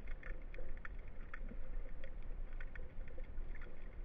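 Underwater ambience heard through a submerged camera: a steady low rumble of moving water with scattered small clicks and crackles, several a second, and a faint steady hum.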